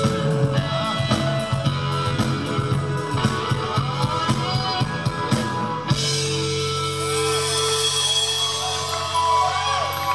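Live rock band with electric guitars, bass and drum kit playing at full volume. About six seconds in the drums stop abruptly and a sustained chord rings on.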